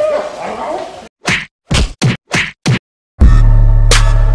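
A run of five short whoosh-and-whack sound-effect hits in quick succession, each separated by dead silence, an edited transition stinger. A party shout fades out just before them, and loud bass-heavy music kicks in near the end.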